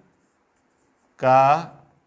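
Marker pen writing on a whiteboard, faint, with a man saying one word about a second in.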